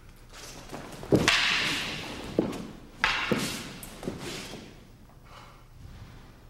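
Several dull thuds on a tatami mat with a rustling hiss after them, from two Aikido practitioners in hakama stepping and moving in close. The loudest thud comes about a second in, with more about two and a half, three and four seconds in.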